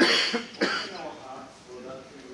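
A person coughs twice, sharply, the second cough about half a second after the first, over a voice speaking quietly.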